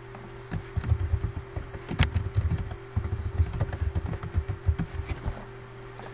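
Typing on a computer keyboard: a quick, uneven run of keystrokes, with one louder key click about two seconds in.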